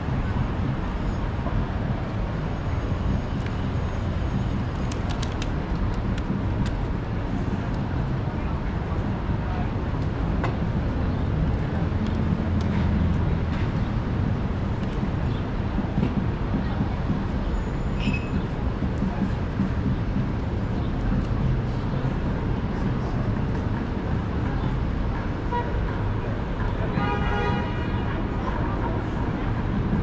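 Busy downtown street ambience: a steady rumble of passing traffic with the chatter of pedestrians on a crowded sidewalk. A brief high tone sounds about two-thirds of the way through, and a short horn toot near the end.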